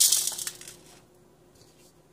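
Whole black peppercorns sprinkled by hand over raw milkfish pieces in a stainless steel pot: a brief patter that fades out within the first second, leaving near quiet.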